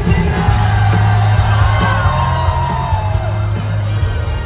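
Live rock band playing in a large hall, with a voice singing over electric guitars, bass and drums, recorded from within the audience.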